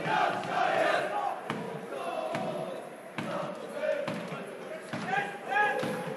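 Shouting and chanting voices from football players and fans during a match in play. Three sharp thuds of the ball being kicked come at intervals through it.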